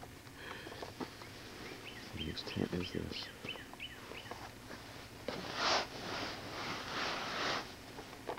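Small birds chirping, a run of short repeated high calls, with a few low knocks; then, about five seconds in, two longer bursts of rustling as tent fabric brushes close against the microphone.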